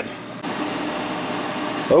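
Room fans running: an even rush of air with a faint steady hum.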